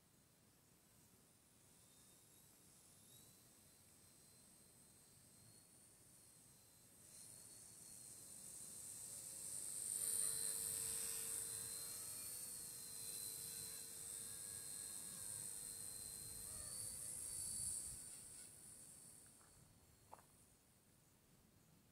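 Radio-controlled Bell 206 JetRanger scale model helicopter flying past. Its high-pitched whine swells from about seven seconds in, is loudest around ten seconds, holds, and fades near the end.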